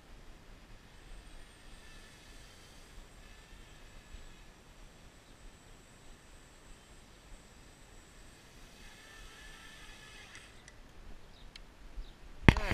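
Faint high-pitched whine of a small racing quadcopter's brushless motors, coming and going, over a low rumble of wind on the microphone.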